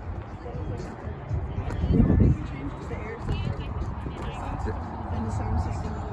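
Wind rumbling on the microphone, with a man's voice talking faintly in the background.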